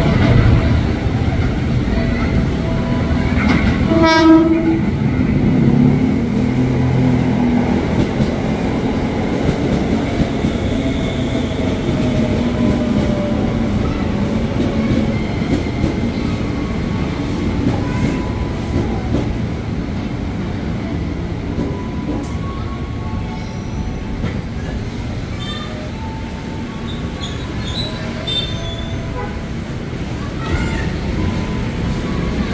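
JR 205-series electric commuter train giving one short horn blast about four seconds in, then rolling into the platform with wheel-on-rail noise. A falling motor tone is heard as it slows to a stop, and the noise fades gradually.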